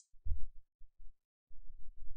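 A few faint, low thumps, with nothing else above them.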